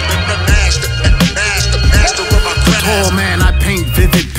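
Hip-hop track: a beat of heavy, regular kick drums with a voice over it.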